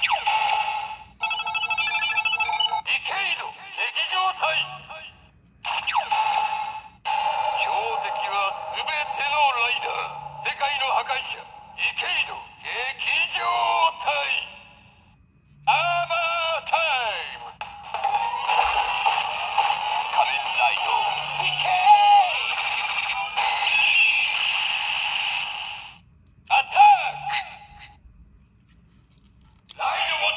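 Kamen Rider Decade Violent Emotion Ridewatch toy playing its electronic sounds through its small built-in speaker: a string of separate voice calls and jingle clips one after another, thin and tinny, with short pauses between them.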